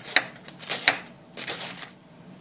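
Kitchen knife slicing through a quarter head of green cabbage onto a bamboo cutting board: several crisp crunchy chops at an uneven pace, shredding the cabbage across the grain.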